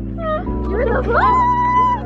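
Background music, with a high, drawn-out voice sound like a meow over it. It starts briefly, then rises in pitch and holds one note through the second half.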